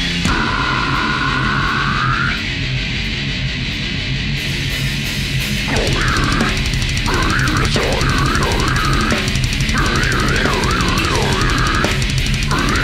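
Live heavy band playing loud through the board mix: guitars, bass and drums. A high note is held near the start while the cymbals drop out, the cymbals come back about four seconds in, and high, wavering notes run over the music from about six seconds on.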